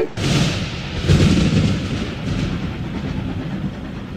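A loud rumbling noise starts suddenly, surges again about a second in, then slowly fades away.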